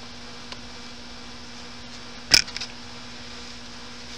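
A steady low hum, with one sharp knock about halfway through and a few faint ticks, as hands pack potting soil around a seedling in a plastic bucket.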